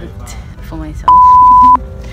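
A single loud, steady electronic bleep of under a second, starting and stopping abruptly about a second in: a censor beep laid over the speech in editing.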